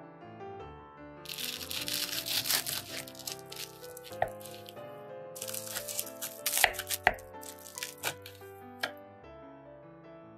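Crisp toasted bread crust crunching and crackling as a large knife saws through it, in two bouts with a few sharp cracks, over soft background piano music.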